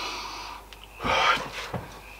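A man sniffing a glass of beer: two noisy breaths through the nose, a softer one at the start and a louder one about a second in.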